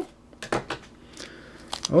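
Light handling noises from a bundle of trading cards held together with masking tape being opened by hand: a few soft clicks and rustles of card and tape.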